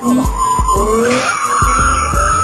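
Car tyres squealing in one long screech from wheelspin as the car drifts, rising slightly in pitch about a second in. Music with a steady thumping beat plays underneath.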